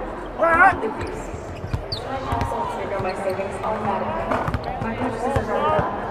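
Basketballs bouncing on a hardwood court in irregular thuds, over steady arena crowd chatter, with a brief voice near the start.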